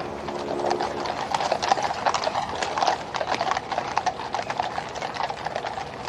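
Horses' hooves clip-clopping on a tarmac road: many mounted cavalry horses at a walk, the dense, uneven strikes growing louder about a second in.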